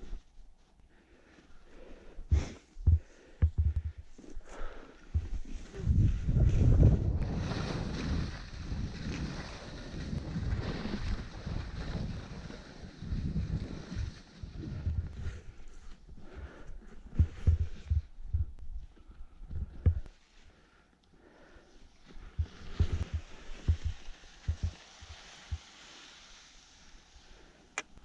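Skis scraping and chattering over chopped-up packed snow on a downhill run, with wind rumbling on the microphone and occasional knocks from bumps. The scraping hiss swells in the middle and again near the end.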